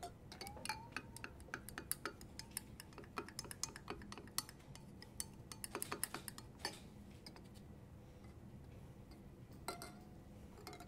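Glass stirring rod clinking and tapping against the inside of a glass beaker as melted gelatin is stirred: a quick, irregular run of light clicks that thins out after about seven seconds, with one more clink near the end.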